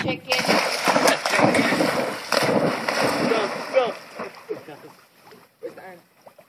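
A dog jumps into a lake with a loud splash about a third of a second in, then water churns for a few seconds and fades as it swims off.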